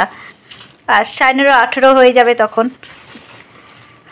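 Speech: one voice talks for about two seconds, starting about a second in. There is only quiet room sound around it.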